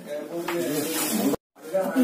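A woman talking in a small room, her speech broken off by an abrupt moment of dead silence about a second and a half in, where the recording is cut.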